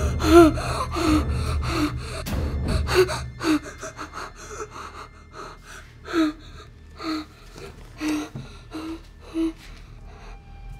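A frightened boy's gasping breaths, rapid and voiced at first, then slowing to single sharp gasps about a second apart. A low rumble runs under the first few seconds.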